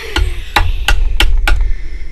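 A gavel struck five times in a steady rhythm, about three knocks a second, each a sharp knock with a low thud under it.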